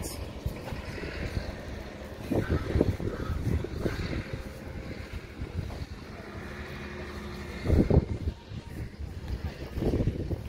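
Wind buffeting the microphone on an open rooftop, a low rumble that swells in gusts, loudest about two and a half seconds in and again about eight seconds in.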